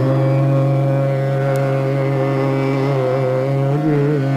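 Male Hindustani khayal vocalist holding one long, steady note in Raga Multani over a drone, the pitch wavering slightly near the end.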